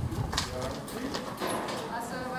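People talking, with a few sharp clacks of hard footsteps spread through the two seconds.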